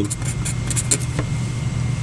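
A pen writing a few short strokes on paper, faint scratches and a couple of light taps, over a steady low background hum.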